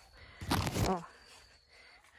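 A brief rustle of okra leaves brushing against the phone about half a second in, under a short spoken "Ó", then quiet with a faint steady high-pitched tone.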